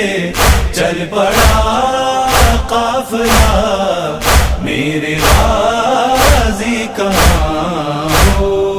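A male voice chanting an Urdu noha lament, with a chorus, over a steady deep percussive beat of about one stroke a second.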